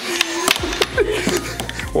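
Red plastic puck clacking off plastic mallets and the table's rails in quick play on a small tabletop air hockey table with no air running: a run of sharp knocks, over background music.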